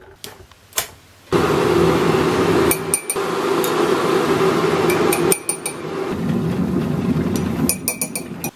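Electric kettle clicked on, then heating with a loud steady rushing rumble, while a metal spoon clinks against a ceramic mug a few times.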